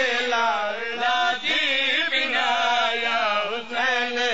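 Voices chanting a drawn-out, melodic religious recitation in long phrases, with brief breaks between them.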